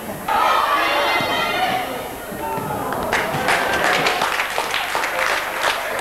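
Voices calling out on an open football pitch, starting suddenly just after the start, followed from about halfway by a run of short, sharp knocks.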